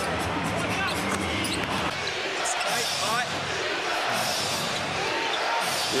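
Arena sound of a live basketball game: steady crowd noise with sneakers squeaking on the hardwood court in short, repeated chirps.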